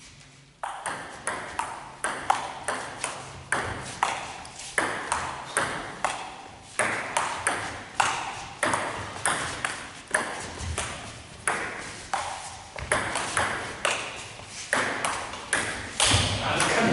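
Table tennis rally: a serve about half a second in, then a long unbroken exchange of ball strikes off rubber-faced rackets and bounces on the table. The result is a sharp click two to three times a second, each with a short echo from the hall.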